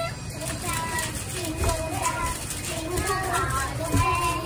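Young girls' voices, talking and calling out.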